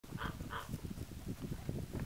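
A dog barks twice in quick succession early on, over a low, uneven rumble.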